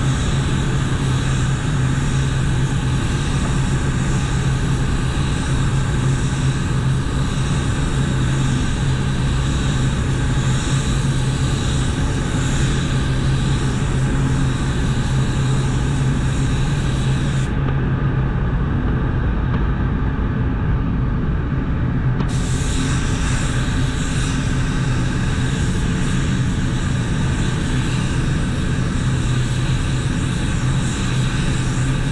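SATAjet 5500 gravity-feed spray gun hissing steadily as it sprays clear coat at 30 psi with fluid and fan wide open, over a steady low hum of the spray booth's air. The hiss cuts out for about five seconds a little past the middle as the trigger is let off, then comes back.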